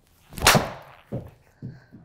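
Titleist TSi3 titanium driver swung hard: a quick whoosh ends in a loud, sharp crack as the clubhead strikes the golf ball about half a second in. Two duller thumps follow about a second later.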